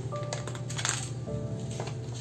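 Soft background music of held notes, with paper stationery packets rustling and tapping as they are laid down on a table, the loudest rustle near the middle.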